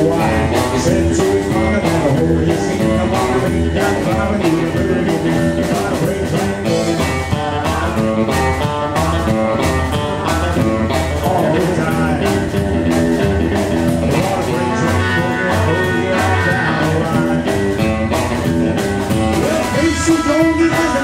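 Live rock 'n' roll trio playing a boogie number, guitar over a steady, driving beat.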